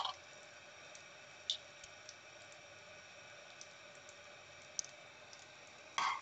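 Quiet room with a faint steady hum and a few light clicks and taps of glasses being handled on a countertop, the clearest about one and a half seconds in and near the end.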